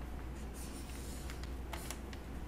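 Faint rustling and scratching with a few light clicks, over a steady low hum.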